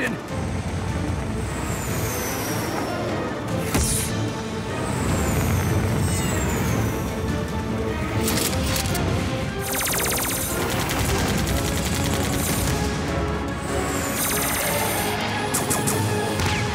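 Cartoon battle sound effects over action music: a continuous low rumble with a few falling whistles early on the sound track, and rapid bursts of machine-gun fire later, the longest about ten seconds in.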